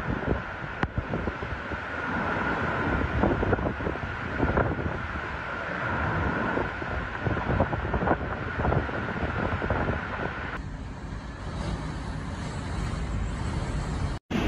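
Typhoon-force wind gusting hard across the microphone in low, uneven buffets, over a steady high whistle that stops about ten seconds in.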